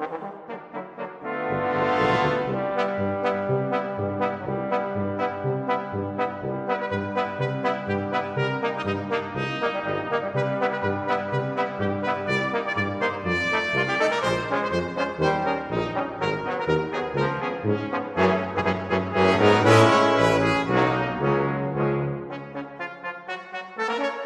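Brass band playing an upbeat piece with a steady, regular beat in the bass. The full band comes in strongly about a second and a half in, swells to its loudest about twenty seconds in, then drops back near the end.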